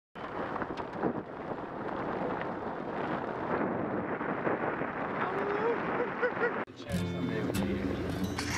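Wind and tyre noise from a car driving on a snow-covered road, picked up by a camera mounted outside by the side mirror. About seven seconds in it cuts off suddenly and gives way to a steady low hum.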